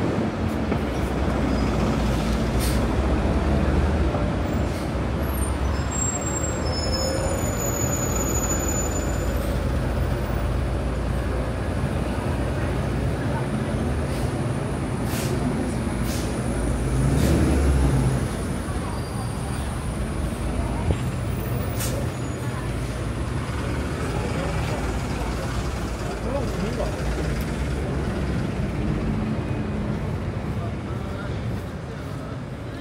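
City buses and street traffic running close by, a steady low engine rumble that swells as a bus passes about 17 seconds in.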